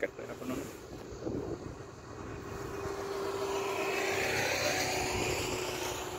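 A passing engine-driven vehicle: a steady hum over a broad rush that swells over a few seconds, peaks near the end and begins to fade.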